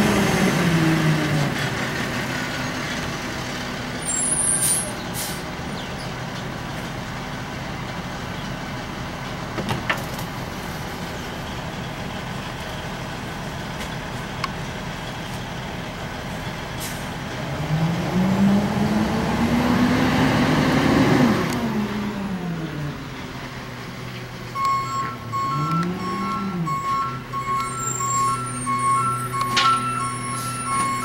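A large truck's engine running steadily, revving up and falling back about two-thirds of the way through, with a shorter rev a few seconds later. A reversing alarm starts beeping in a steady repeating pattern near the end.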